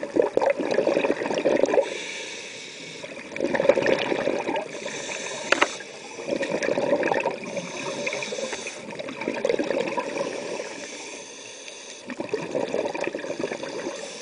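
Scuba diver breathing through a regulator underwater: exhaled air bubbling out in gurgling bursts every couple of seconds, with a steady hiss between them on each inhalation.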